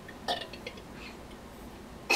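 A person belching faintly in the background, about a quarter second in.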